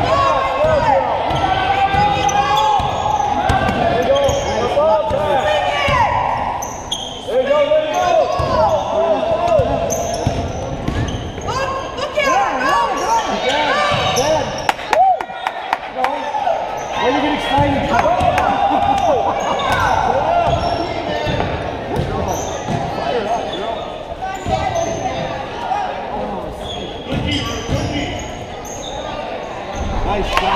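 A basketball being dribbled and bouncing on a hardwood gym floor, with sneakers squeaking and players and spectators calling out, all echoing in a large hall.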